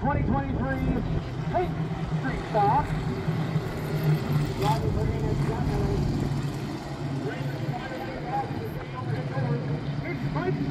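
A pack of street stock race cars running together on the oval, a steady engine drone, with a public-address announcer talking over it.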